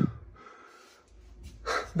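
A man breathing close to a phone's microphone between sentences: a faint breath out, then a breath in, with speech starting again near the end.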